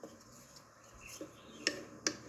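Spine of an Olfa Works SG1-OD knife scraped along a ferrocerium rod to strike sparks onto a cotton ball: a few short, faint metallic scrapes, the strongest near the end.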